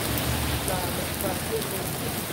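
Steady rain falling on pavement and a wet street, an even hiss throughout, with a faint voice underneath.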